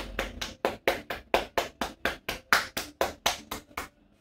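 Rapid rhythmic slapping of the barber's hands on a customer's oiled scalp during an Indian head massage: sharp claps about five a second, stopping just before the end.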